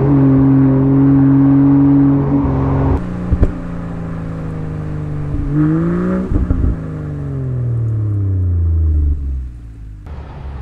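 Land Rover Defender P400's 3.0-litre turbocharged inline-six running through a QuickSilver performance exhaust with active valves: revs held steady and high for about three seconds, then dropping. Near the middle a quick rev rises with a few sharp pops, then the revs fall away slowly over about three seconds and the note quietens near the end.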